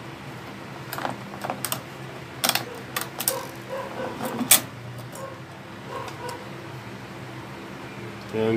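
Scattered sharp plastic clicks and rattles as wire connectors are pulled and a rice cooker's touch-panel circuit board is worked loose, the loudest click a little past the middle, over a steady low hum.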